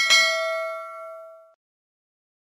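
A bell-like notification 'ding' sound effect for a subscribe button's bell icon: one bright strike that rings and fades out over about a second and a half.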